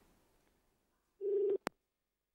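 Telephone ringback tone heard over the line: one short burst of a steady low buzzing tone about a second in, the call ringing and not yet answered, followed by a single sharp click.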